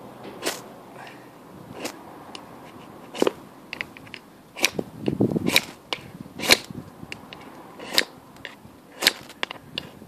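Ferrocerium fire steel scraped down the Shango notch on the spine of a TOPS BOB Fieldcraft knife, about eight short sharp scrapes, roughly one a second, the loudest near the middle. These are trial strikes while the striker is still working out which way round the notch works.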